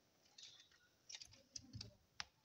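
Faint clicks and light knocks of plastic LEGO parts being handled in the hands: a few clicks about a second in and another cluster with a soft thud near the end.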